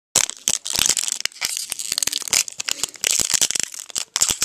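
A Magic: The Gathering booster pack's foil wrapper being torn open and crinkled in the hands: dense, continuous crackling with many sharp little crackles.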